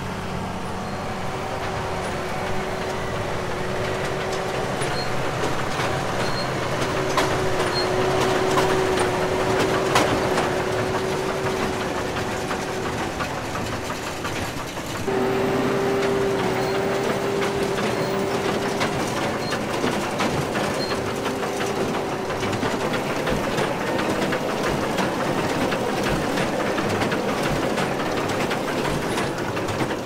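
Tractor engine and New Holland BB940 large square baler running under load while baling chaff (menue paille) from a pile, with a steady whine over the machine noise. The sound jumps suddenly louder about halfway through.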